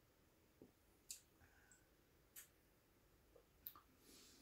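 Near silence, with three faint, short clicks about a second and a quarter apart.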